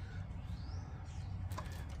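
Quiet workshop background with a steady low hum and faint high rising chirps, then a few light clicks about one and a half seconds in as the radio's plastic chassis is handled.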